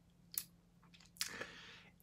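Faint mouth sounds of someone tasting a drink just swallowed: a lip smack about a third of a second in and a few small tongue clicks, then a short breathy exhale near the end.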